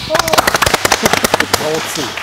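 A small group of people clapping close by: quick, sharp claps for about a second and a half, then thinning out, with voices over them.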